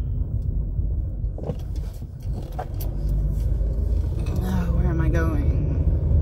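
Steady low rumble of road and engine noise inside a moving car's cabin, with a couple of light knocks in the first half.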